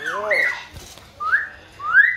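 Hill myna calling: a short throaty voice-like note, then a clear whistle and two short rising whistles, the last the loudest.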